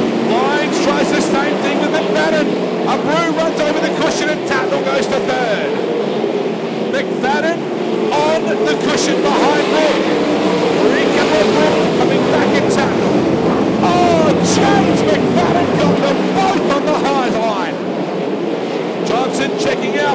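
A field of winged sprint cars racing on a dirt oval, their V8 engines running hard together as the cars go by.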